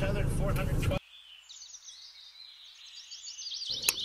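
A small bird chirping repeatedly outdoors: a quick series of faint, high, downward-sliding chirps, several a second. Before that, about a second of car-interior noise that stops suddenly.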